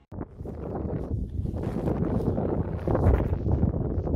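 Wind buffeting the microphone in uneven gusts, heaviest in the low end, starting just after a brief silence.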